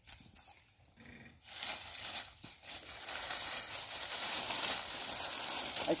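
Dry plant stalks crackling and rustling under rubber boots as someone steps along a pile of them. It starts about a second and a half in and goes on as a steady dense crackle.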